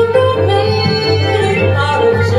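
A woman sings a held, slightly wavering melody line over a small live jazz band of nylon-string guitar, violin, piano and upright bass, the bass walking steadily underneath.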